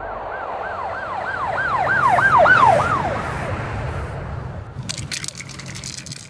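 Emergency vehicle siren on a fast yelp, about three rising-and-falling sweeps a second, growing louder to a peak about two and a half seconds in and then fading away, over a low street rumble. A rapid run of clicks near the end.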